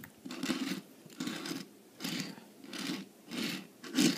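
A small diecast stock car's plastic wheels rolling back and forth on a hard tabletop, about six short rolling passes in a steady rhythm.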